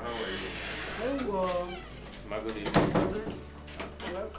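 A person's voice making wordless exclamations: a drawn-out call that bends in pitch about a second in, and a louder outburst near three seconds.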